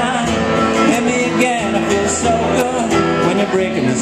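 A man singing over a strummed acoustic guitar.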